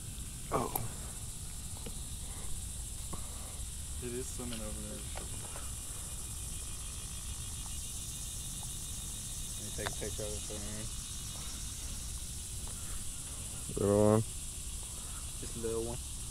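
Steady high-pitched drone of insects, with short stretches of muffled talk about four, ten and fourteen seconds in.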